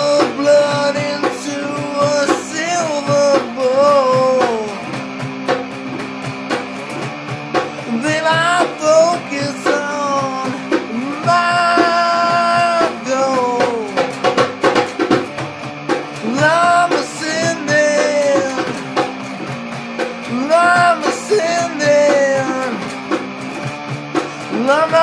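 Rock band music: electric guitar and drums, with a lead melody that keeps bending up and down in pitch.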